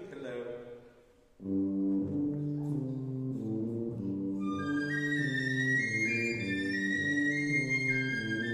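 Symphonic wind ensemble playing: sustained low brass chords come in suddenly about a second and a half in, and from about halfway higher instruments join with a line of short notes climbing in steps over them.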